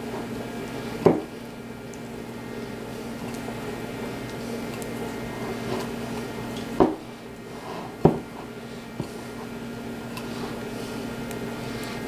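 Bare hands squeezing and rubbing softened butter into sugar and flour in a glass bowl, making a soft squishing and rustling. There are sharp knocks against the bowl about a second in and again around seven and eight seconds in, over a steady low hum.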